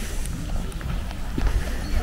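Footsteps of a person walking on a paved path, with a steady low rumble on the handheld microphone.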